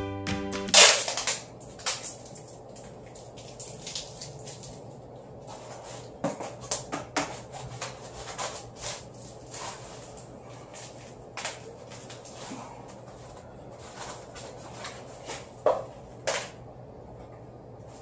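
Background music cuts off within the first second, followed by one loud sharp clack. After that come scattered small clicks and knocks of hand work with parts, over a steady low electrical hum.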